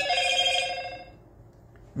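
A steady electronic ringing tone with several pitches at once, like a phone ringtone, fading away within the first second.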